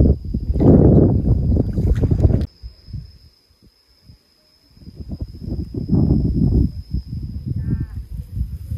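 Wind buffeting the microphone, a loud low rumble that cuts off abruptly about two and a half seconds in and comes back about five seconds in. A faint steady high-pitched whine runs underneath.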